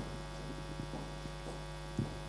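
Steady electrical mains hum in the sound system: a low buzz with a stack of even overtones, over faint room noise, with a light click near the end.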